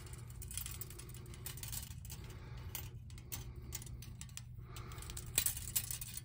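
Light metallic clicks and rattles as the thin metal blades of a wind spinner are twisted and bent by hand, the strips and their small nuts knocking together, a little louder near the end.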